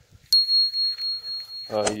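A single high bell ding, starting with a sharp click and ringing on as one steady, gently pulsing tone for nearly two seconds. It is the notification-bell sound effect of a subscribe-button animation.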